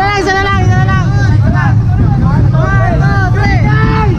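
A group of men shouting and cheering together in short bursts, over street-crowd babble and a steady low rumble.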